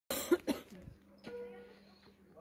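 Two short coughs close to the microphone, the second half a second after the first, then a click a little past a second in.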